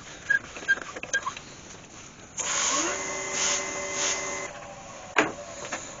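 Wood lathe running while a cloth is held against the spinning walnut piece to apply finish. A rubbing hiss with a steady motor whine lasts about two seconds in the middle, and there is a single sharp knock near the end.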